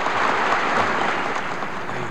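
Audience applauding steadily, easing off slightly near the end.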